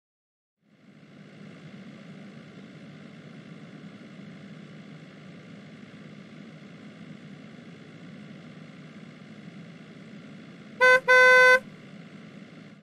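A car horn honks twice near the end, a short toot then a longer one, over a steady low car rumble.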